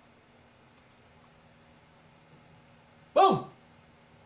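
Quiet room tone with a faint computer-mouse click about a second in, as a file is saved. Near the end comes one short, loud vocal sound from a man, a brief voiced noise falling in pitch, not a word.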